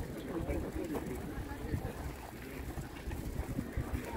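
Faint voices of people talking in the background, over a low rumble of wind on the microphone.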